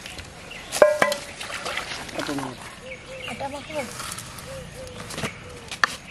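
A metal plate clanks twice about a second in, leaving a short ring, then a hen clucks in short repeated notes.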